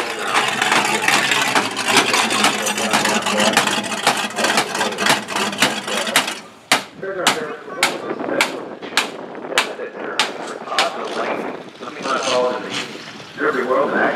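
Demolition derby car's engine running loudly with no exhaust pipes. About six seconds in it gives way to a run of sharp knocks, about two or three a second, lasting several seconds.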